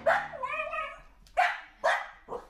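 A dog barking: a bark, then a longer wavering yelp, then two short sharp barks in the second half.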